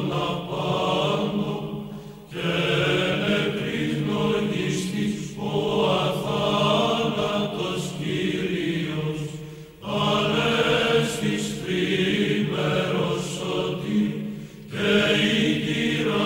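Chanting by a group of voices, sung in long phrases over a steady low drone, with brief breaks between phrases every three to five seconds.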